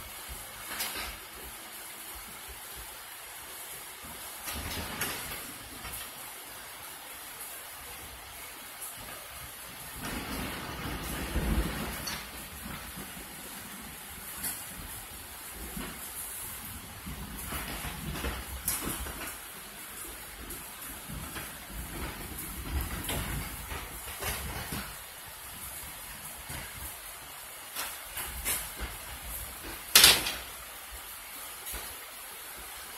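Two dogs wrestling on a wooden deck: bursts of scuffling and paws scrabbling on the boards and a dog bed, over a steady hiss of rain, with a sharp knock near the end.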